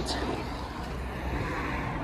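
Steady low rumble of outdoor background noise, with no distinct knock or click standing out.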